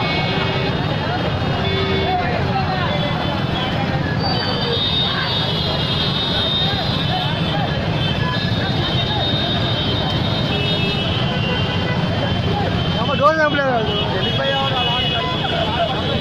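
Dense street traffic from many motorbikes, scooters and cars, with horns honking on and off and a crowd's voices mixed in. One loud yell stands out about three seconds before the end.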